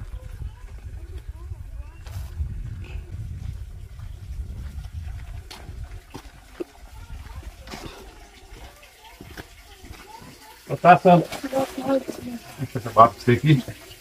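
A low rumbling noise with a few scattered light knocks for the first half, then people's voices, loud and close, from about eleven seconds in.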